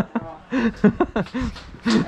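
Men chuckling and laughing in short bursts.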